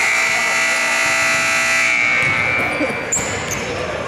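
Gym scoreboard buzzer sounding one steady tone for about two seconds as the scoreboard clock reaches zero. A short high squeak follows about three seconds in.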